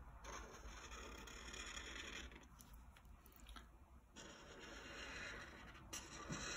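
Faint scratching of a thick chisel-tip Marks-A-Lot permanent marker drawn across paper in two long strokes, the first in the opening two seconds and the second from about four seconds in.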